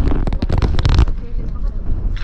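Crackling, scraping handling noise from a gloved hand rubbing and pressing on the action camera, dense for about the first second and then easing to a low rumble.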